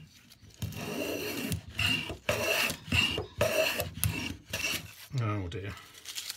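Record 0311 shoulder plane cutting shavings from the edge of a wooden board in a quick run of about six or seven short strokes. A brief vocal sound follows near the end.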